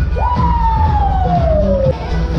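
Show music over loudspeakers with a heavy bass, topped by one loud siren-like tone that jumps up and then glides slowly down for nearly two seconds before cutting off.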